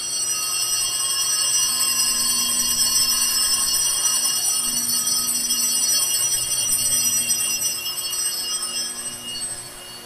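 Altar bells ringing continuously, a bright high ringing of several steady tones that fades out near the end. The ringing marks the elevation of the host, just after the words of consecration.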